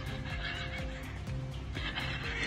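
Background music with an animal's high-pitched squealing call over it, once about half a second in and again near the end.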